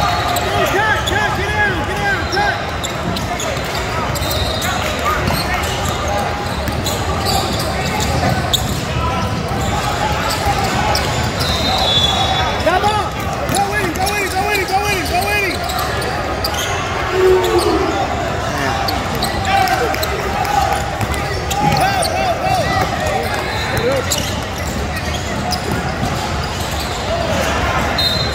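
Game noise in a large, echoing hall: a basketball bouncing on the hardwood court, sneakers squeaking, and a steady babble of voices from players and spectators.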